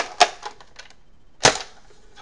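Plastic clicks and clacks from a Buzz Bee Predator bolt-action dart blaster being handled during reloading: two sharp clacks at the start, a few faint ticks, then one loud clack about a second and a half in.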